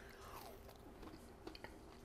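Faint chewing of a bite of grilled pork rib, with a few soft clicks in the second half.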